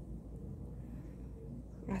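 A steady low background hum with faint room noise and no distinct sound events.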